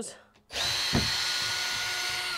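Cordless drill/driver running steadily at one pitch, backing a screw out of a panel. It starts about half a second in, with a light knock just after.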